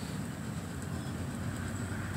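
Steady low rumble with a faint hiss over it and no distinct events.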